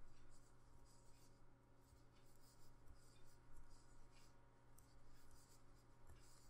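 Faint, irregular scratchy rustling of a metal crochet hook drawing yarn through stitches as double crochet is worked, over a low steady hum.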